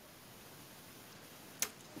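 Faint room hiss, broken by a single short sharp click near the end.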